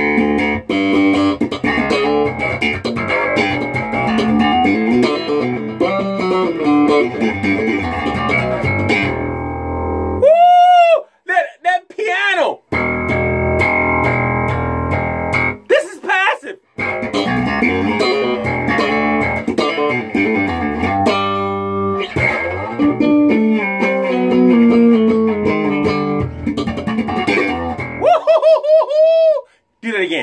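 Electric bass played through an amp with both pickups on: a busy run of notes with a deep, full low end, stopping briefly a few times.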